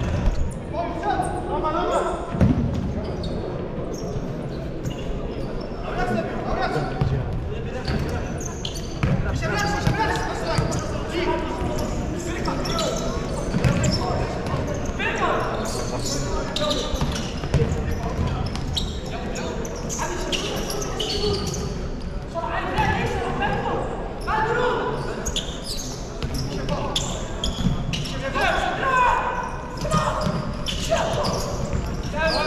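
Futsal game in an echoing sports hall: repeated knocks of the ball being kicked and bouncing on the hard court, mixed with indistinct shouts from players and chatter from spectators.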